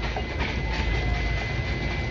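A sailboat's engine running in gear, a steady low rumble with wind buffeting the microphone. A thin steady high-pitched tone sounds through it.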